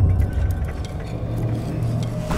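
Low, steady rumble with a few faint clicks over it.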